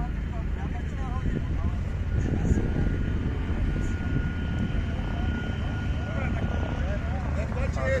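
A steady low turbine rumble with a thin, level high whine from a parked Mil Mi-24V helicopter whose rotors are not turning. The whine fades about two thirds of the way through. Voices are heard faintly over it.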